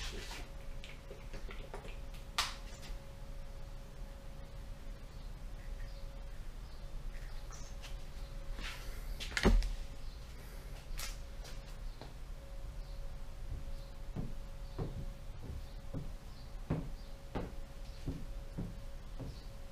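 Scattered clicks and light knocks of objects being handled, with one louder thump about halfway through, over a faint steady hum.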